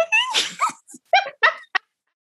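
Women laughing: a spoken "right?" breaking into laughter, then a few short, high-pitched bursts of giggling with gaps between.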